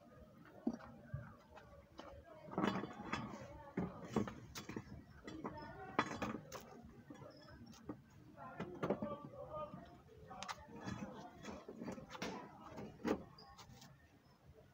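Indistinct talking with several sharp knocks as a stone and a spare tyre are handled and set under a jacked-up car as a safety support.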